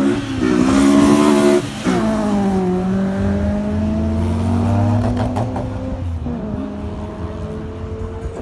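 Race car engine accelerating hard: its pitch climbs, drops sharply at a gear change a little under two seconds in, then climbs again more slowly and falls away near the end.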